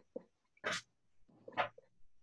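A soft tap of a paintbrush dabbing paint onto a board, then two short breathy noises about a second apart.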